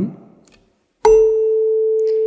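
A tuning fork tuned to concert A (440 Hz), mounted on a wooden resonance box, struck with a rubber mallet about a second in. It then rings with one steady, pure tone, and faint high overtones from the strike die away within half a second.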